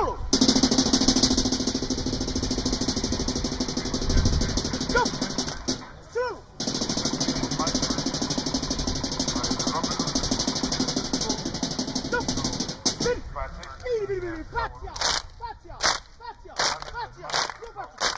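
Seated group singing a Samoan siva song over fast, continuous clapping. It breaks off briefly about six seconds in and stops shortly before the end. After that come separate sharp claps about two a second, with a few whooping calls.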